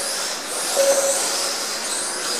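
Mini-Z 1:28-scale electric RC race cars running on the track: a steady high whine of small electric motors mixed with tyre noise.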